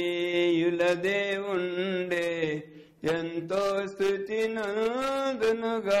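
A man's voice chanting a line in long, held, melodic notes, with a short break about three seconds in.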